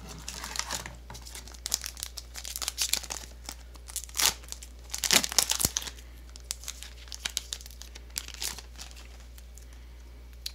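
Foil trading-card booster pack crinkling as it is handled and torn open. The crackle comes in uneven spells and is loudest around four and again about five seconds in.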